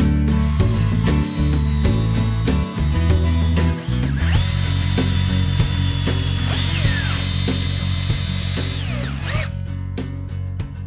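Power drill driving screws through a steel strap hinge into a cedar gate: a high, steady motor whine that winds down twice near the end as the trigger is let off.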